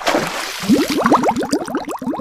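A water splash followed by a quick run of rising bubble blips, like a splash-and-bubbles sound effect.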